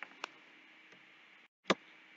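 Computer mouse clicks: two faint clicks at the start and a sharper one near the end, over a low steady hiss.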